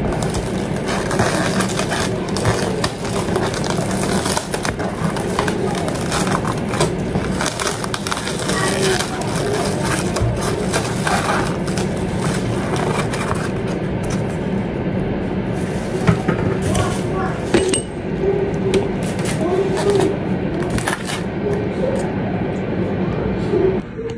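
Plastic takeaway bag rustling and plastic lids and foam containers being pulled open and set down on a stone countertop: many small clicks, crinkles and scrapes over a steady low hum.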